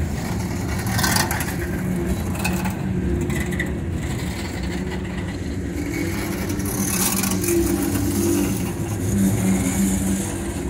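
Norfolk Southern freight train passing, its boxcars and lumber-laden centerbeam flatcars rolling by: a steady rumble of steel wheels on rail, with a few faint, brief squeals.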